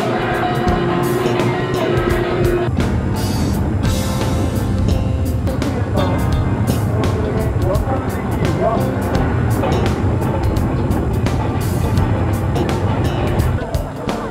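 Korean pungmul farmers' band playing: small hand gongs struck in a dense, fast clatter over drums, with a held tone through the first few seconds.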